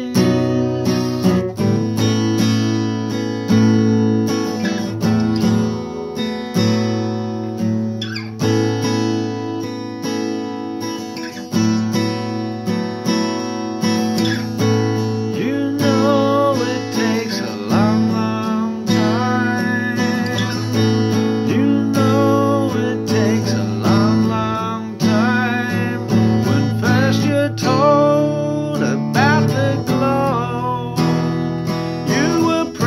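Acoustic guitar strummed steadily, with a man's voice singing over it in places, mostly in the second half.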